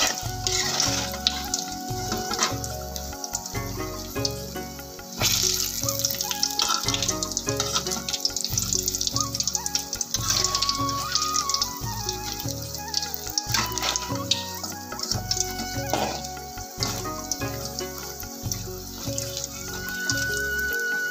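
Batter-coated chilli fritters (mirchi pakoda) deep-frying in hot oil, a steady sizzle with scattered crackles, under background music with a steady beat.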